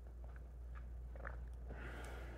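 A person drinking juice: faint gulps and small wet swallowing clicks, a few scattered through, with a soft breath out near the end, over a low steady hum.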